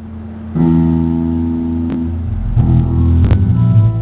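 Live rock band playing: an amplified guitar chord rings out about half a second in and is held, then changes about two and a half seconds in, with bass underneath. Two sharp drum hits come in between.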